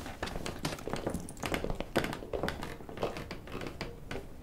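Footsteps of several people walking on a wooden hallway floor, with clothing rustle: irregular taps and thumps throughout.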